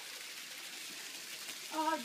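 Garden hose running, a steady hiss of water spraying out onto wet, muddy ground.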